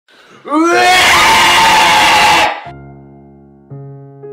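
A loud excited scream, its pitch rising at the start, lasting about two seconds and cut off suddenly. Then piano chords begin, with a new chord struck near the end.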